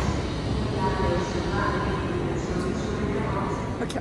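Indistinct background voices over the steady hum of a busy railway station.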